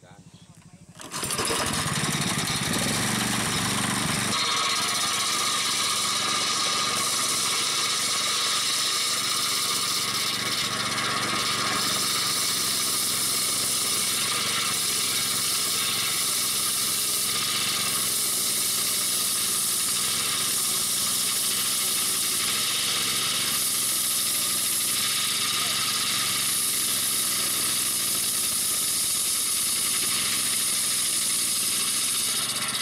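Homemade portable sawmill: a small gasoline engine driving a large circular saw blade, coming up to speed about a second in and then running steadily as the blade rips lengthwise through a plank. About four seconds in the deep part of the sound drops away and the sound turns higher.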